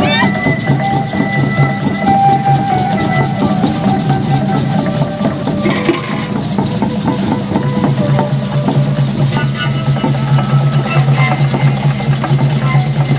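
Live ceremonial music: hand drums and shaken rattles keeping a dense, steady rhythm, with a few long held notes of a melody above.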